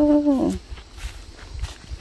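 A voice holding a long, level drawn-out note that ends about half a second in, then a quiet stretch with only a low rumble.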